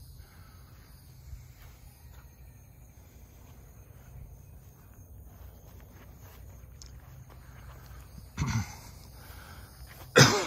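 Soft footsteps on a grassy trail over a low steady rumble. About eight and a half seconds in, a man's voice makes a short burst.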